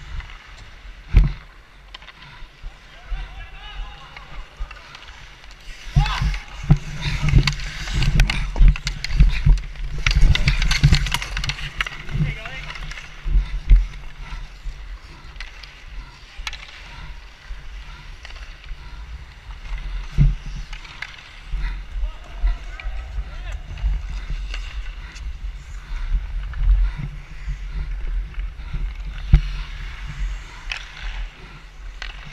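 Ice hockey skates scraping and carving on the ice, with sharp clacks of sticks and puck, under a steady wind rumble on a body-worn action camera's microphone. It gets loudest and busiest a few seconds in, for about seven seconds, then settles back. Players' voices call out now and then.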